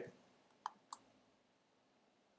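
Three quiet clicks of a computer mouse in quick succession, between half a second and a second in.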